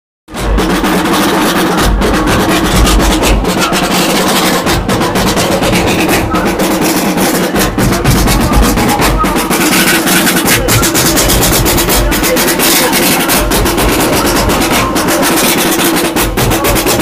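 A drum band playing fast, continuous rhythms: large bass drums struck with felt mallets give deep thumps under rapid snare-drum rolls and strokes. The drumming is loud and starts abruptly just after the beginning.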